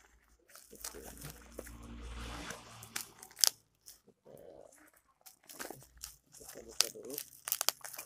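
Plastic courier packaging being crinkled and torn open by hand: irregular crackles and rustling, with the loudest crackle about three and a half seconds in and another cluster near the end.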